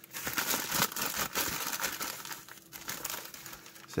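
Plastic mail packaging crinkling and crackling irregularly as it is handled and opened by hand.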